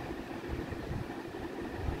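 Pen writing on ruled notebook paper, with soft irregular bumps from the pen and hand, over a steady background hum and hiss.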